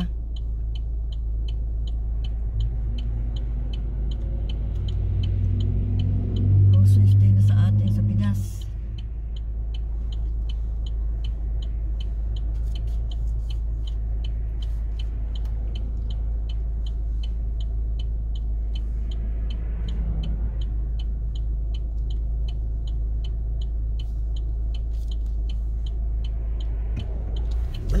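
Car engine idling while the car sits stopped, a steady low rumble heard from inside the cabin, with a fast, even ticking running throughout. About five seconds in, a louder droning hum swells for three seconds or so and then cuts off sharply.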